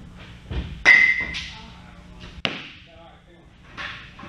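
Baseballs striking during a catching drill: two sharp impacts about a second and a half apart, the first with a short ringing tone.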